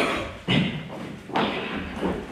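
Two heavy thuds on a stage floor, about a second apart, each dying away quickly.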